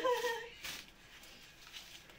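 A woman's drawn-out voice trailing off in the first half second, then near quiet with a faint brief rustle.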